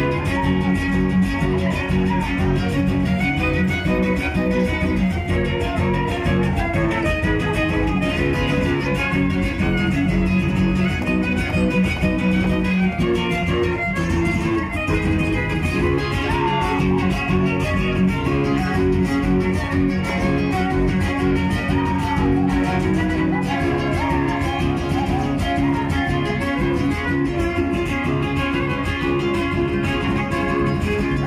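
A live string trio playing without a break, plucked guitars with a fiddle carrying the melody, heard through the PA.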